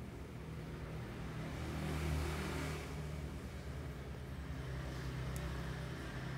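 A motor vehicle's engine, swelling to its loudest about two seconds in and then easing off to a steady low hum.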